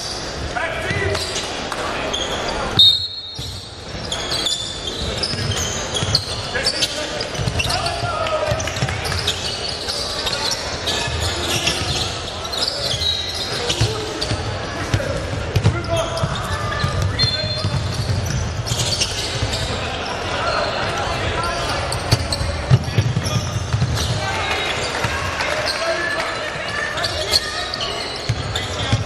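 Live game sound of a basketball being dribbled on a hardwood court, with indistinct shouts from players and onlookers echoing around a large hall.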